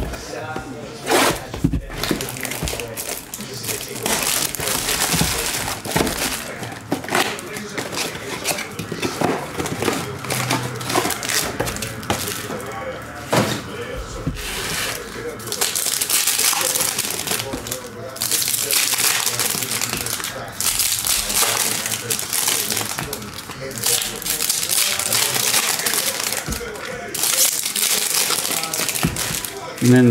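Plastic wrap and foil trading-card packs from a 2023 Bowman Chrome Mega Box crinkling and rustling in the hands, with short cracks and taps as the box is opened and the packs are handled. Near the end a foil pack is torn open.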